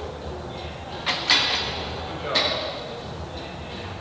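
Loaded barbell being racked onto the steel hooks of a squat stand: two sharp metal clanks a little after a second in, ringing briefly, then another sharp sound about a second later.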